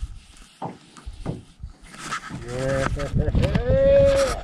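A man's long excited shout, rising and then held on one note, as a trout takes the fly and bends the rod. Two short knocks come before it in the first couple of seconds.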